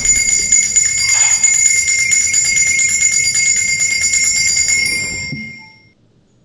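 Altar bells, a cluster of small bells, shaken in a fast continuous jingle with several high ringing tones. The ringing lasts about five seconds and then dies away. It marks the elevation of the consecrated host at Mass.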